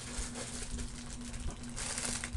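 Faint rustling and handling of packaging as items are moved about on a table, over a steady low electrical hum.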